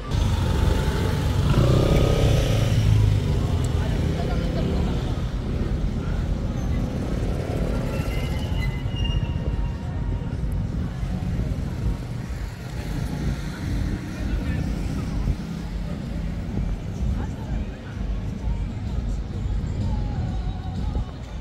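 Busy city street at night: a steady low rumble throughout, with music from a shopfront and snatches of passers-by's voices, most prominent in the first few seconds.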